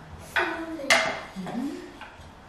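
Cards clacking onto a wooden tray, with the sharpest knock about a second in, mixed with short wordless voice sounds, one of them rising in pitch near the end.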